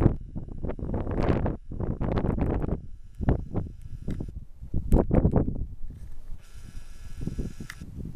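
Wind buffeting the microphone in irregular gusts, a rough, rumbling rush that rises and falls every second or so.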